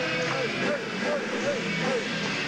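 Live heavy metal band with a distorted electric guitar bending one note up and back down over and over, about three times a second, in a loud, noisy arena mix.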